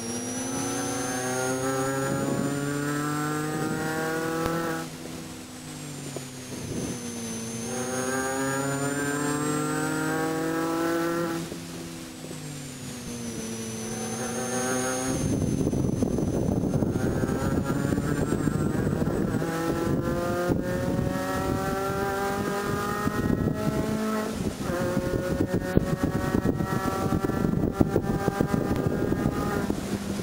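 Inside the cabin, the 2006 Mini Cooper S JCW's supercharged 1.6-litre four-cylinder runs hard on track. Its pitch climbs under acceleration and drops twice in the first half. About halfway through, a heavy rough rumbling noise joins the engine, with occasional knocks.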